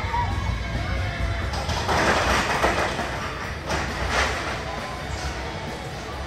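Roller coaster train running on its track over a steady low rumble, with two loud rushing swells about two and four seconds in as the cars go by.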